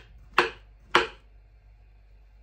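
Kitchen knife slicing through a banana and knocking on a wooden cutting board, two strokes about half a second apart, then the cutting stops.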